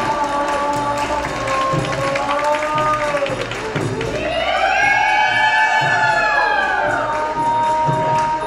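Live Thai traditional ensemble music accompanying a folk dance: a long, held melody line that slides in pitch, sweeping up and back down about halfway through, over light, steady percussion.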